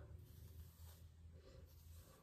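Near silence: room tone with a steady low hum.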